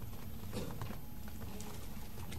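A few faint, scattered light clicks and taps over steady room hiss and low hum.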